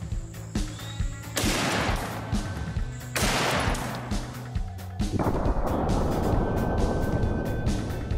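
Three loud rifle shots about two seconds apart, each trailing off in a long echo, the last one duller. Background music with a steady beat runs underneath.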